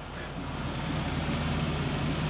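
Vehicle noise outdoors, an even rushing sound building gradually over a low steady hum.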